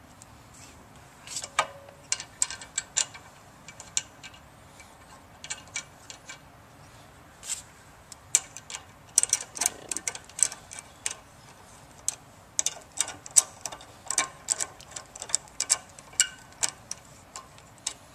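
Socket ratchet clicking in quick runs as the bolts of a vertical pump's shaft coupling are run in, with scattered metal clicks and taps from handling the bolts before that. The runs of ratchet clicks come thicker from about halfway through.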